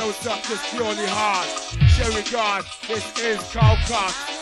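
Early-1990s hardcore rave breakbeat music from a DJ mix, with a quick, sliding vocal-like melodic line over deep bass booms that fall in pitch about every two seconds.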